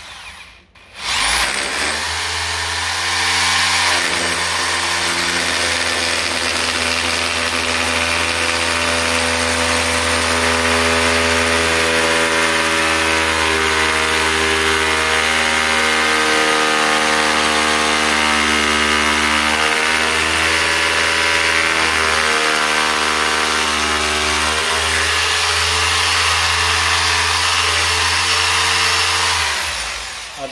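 Corded electric drill boring a hole through a glazed floor tile into the floor beneath, the motor running steadily under load. It stops briefly about a second in, then runs without a break and cuts off just before the end.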